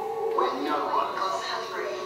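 Voices speaking over background music from a promotional video's soundtrack, played over loudspeakers into the hall.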